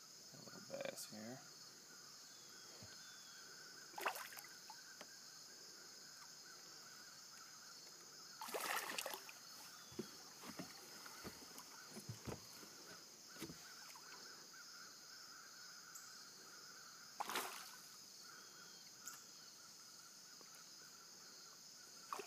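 Very quiet open-air sound with a faint steady high hiss, broken by a few short knocks and splashes as a hooked bass is reeled up beside a fishing boat. The clearest come about four, nine and seventeen seconds in.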